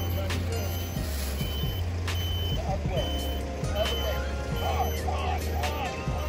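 Electric golf cart's reverse warning beeper sounding repeated short, high beeps while the cart backs up.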